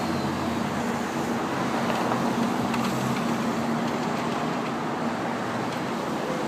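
Steady street traffic noise, with a low engine hum that fades a little over halfway through.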